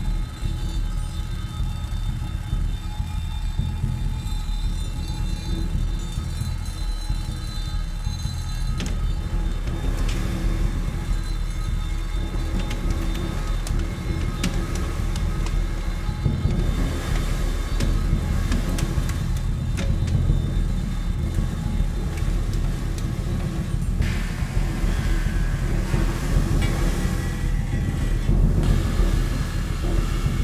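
Prepared drum kit played with extended techniques: a continuous low drum rumble from a soft felt mallet worked on a large drum, with sustained metallic cymbal tones ringing above it. About three-quarters of the way in, a brighter metallic sound joins and grows.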